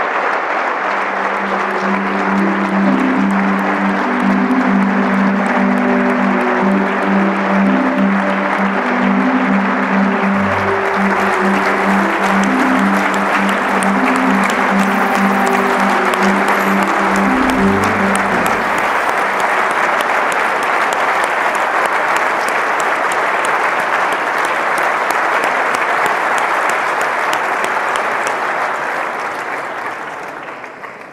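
An audience applauding steadily after a speech, with instrumental background music played under the clapping for roughly the first two-thirds. The applause fades out near the end.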